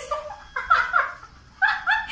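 Short, high-pitched playful squeals from young women laughing, each falling in pitch: a cluster of three about half a second in and two more near the end.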